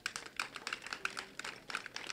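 Faint, irregular clicking, several sharp clicks a second.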